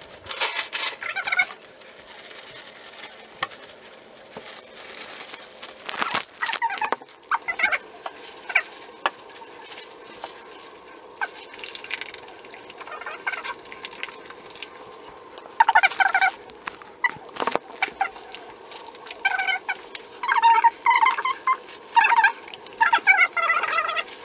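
An animal giving short, pitched, wavering calls in several runs, most often near the end, with scattered clicks and crinkles of plastic being handled.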